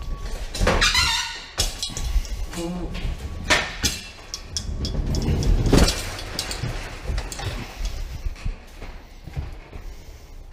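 Manual pallet jack being worked with a loaded pallet on a trailer floor: a brief squeal about a second in, rolling and rattling, and clunks at about three and a half and six seconds.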